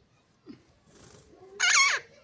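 A parakeet gives one loud, harsh screech near the end, dropping in pitch as it cuts off. Before it there is a small thump and a brief rustle.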